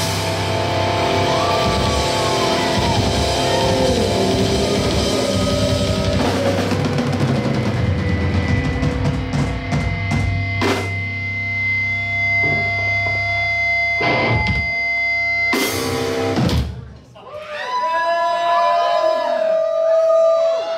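Live rock band with electric guitars, bass and drum kit finishing a song: full playing at first, then held ringing chords with a few drum hits and a final crash that cuts off sharply about three seconds before the end. A woman's voice then comes over the microphone.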